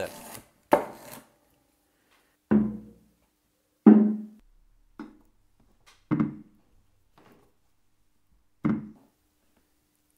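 A kitchen knife chops through a potato onto a wooden cutting board about a second in. Then six separate short electronic instrument notes follow, each starting sharply and dying away. They come from the KontinuumLAB Instrument Kit board through desktop speakers, triggered by touching potato halves wired up as capacitive sensors.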